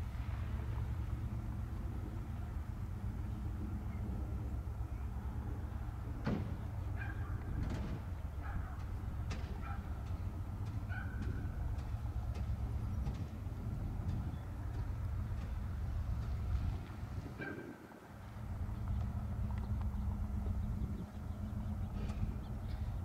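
Union Pacific diesel freight locomotives working under power to get a mixed freight moving from a stand, a steady deep engine rumble. Several sharp clicks and brief squeaks come from the train about six to eleven seconds in and again near seventeen seconds, and the rumble drops away briefly just after.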